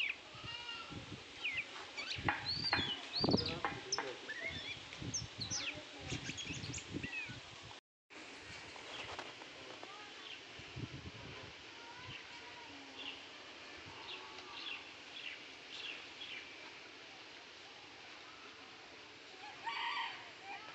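Small birds chirping in many short, quick calls against outdoor village ambience, busiest in the first part. The sound drops out completely for a moment about eight seconds in, then the chirping goes on fainter and sparser.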